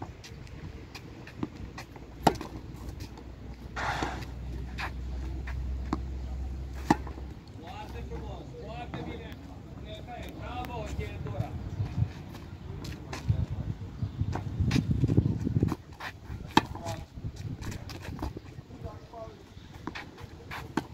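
Tennis balls struck by rackets and bouncing on a clay court, sharp pops coming every second or two through a rally, with distant voices in the middle and near the end.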